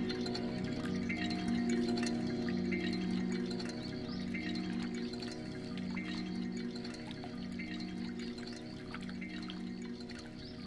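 Ambient live music: a layered drone of sustained low tones, with faint scattered chime-like plinks over it, slowly getting quieter.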